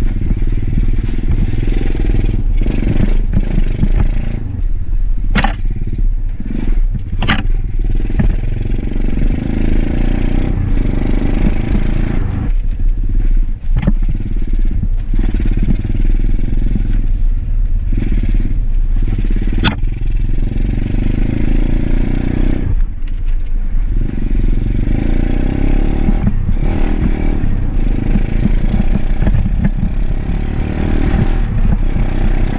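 Dirt bike engine running under way, its pitch rising and falling with the throttle, backing off briefly near the middle and again about two-thirds through. A few sharp clacks sound over it, the loudest about twenty seconds in.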